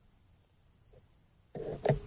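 Trumpet being lifted off its stand, a short clatter of handling about one and a half seconds in that ends in one sharp knock, followed by a brief ringing tone.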